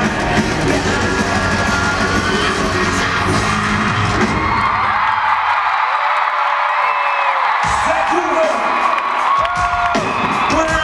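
A live pop-rock band playing through an arena PA. About four and a half seconds in the full band stops, leaving a large arena crowd cheering and screaming, and low music comes back in over the last couple of seconds.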